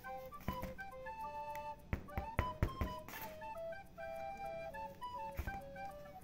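Background music with a flute-like melody of held notes. Several light knocks, most of them about two to three seconds in, come from a cement-filled plastic bottle mould being handled on the table.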